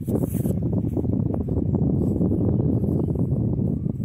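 Wind buffeting the microphone: a steady, loud, low rumble.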